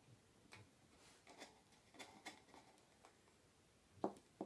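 Near silence, with a handful of faint, short clicks and taps spread irregularly through it.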